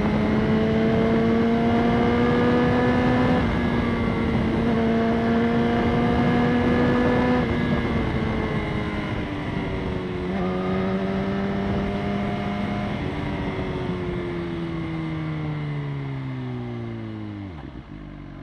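BMW S1000RR's inline-four engine under way with wind rushing past. The engine note climbs slowly with two short breaks in pitch in the first half, holds steady for a while, then falls steadily in pitch and loudness toward the end.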